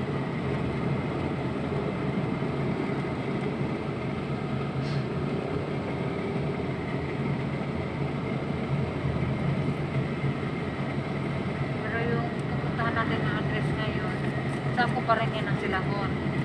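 Steady road and engine noise inside a moving car's cabin at highway speed, with voices coming in near the end.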